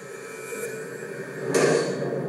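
A single gunshot from a gun clamped in a test rig, about one and a half seconds in: a sudden sharp burst that dies away within half a second, over a faint steady background.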